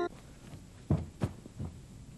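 Three soft, low thuds about a second in, each a short knock or bump, over a quiet steady background hum.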